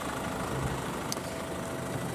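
The Vauxhall Astra GTC's 1.6 CDTI four-cylinder diesel engine idling steadily. A short faint click about halfway through as the driver's door is unlatched and opened.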